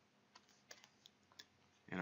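Near silence with about six faint, scattered clicks, like light taps or key presses.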